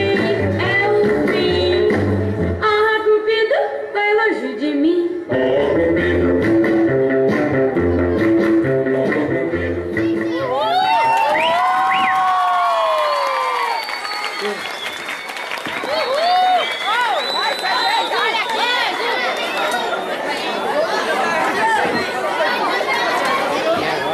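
Recorded rock-and-roll dance music with guitar playing loudly, which stops about ten seconds in; after that an audience calls out and cheers with many overlapping voices.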